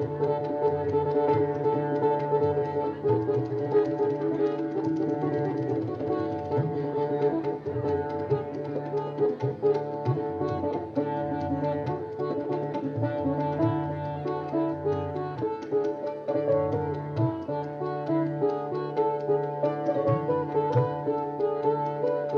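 Live Indian-fusion instrumental ensemble playing: a finger-played electric bass and fast tabla strokes under a plucked-string melody, with sustained notes.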